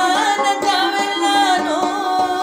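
Pashto tappay music: a voice sings a wavering, bending melody over quick, steady plucked notes of a rabab.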